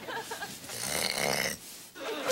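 A man snoring, a drawn-out snore that stops about a second and a half in.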